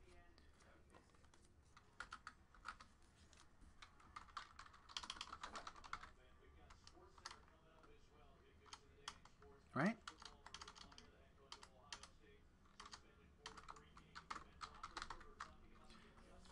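Faint, irregular tapping of computer keyboard keys being typed, in uneven runs. About ten seconds in there is one short rising sound.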